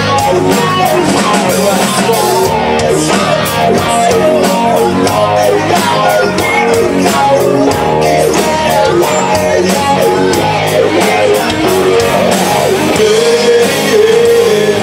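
Live rock band playing loud and steady: electric guitars over a drum kit with regular cymbal strokes.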